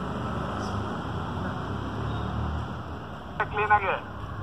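A steady noisy hiss, then a brief voice about three and a half seconds in.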